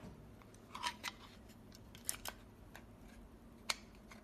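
AA batteries being fitted into a plastic battery box, giving a few short sharp clicks and rattles of plastic and metal, the loudest near the end.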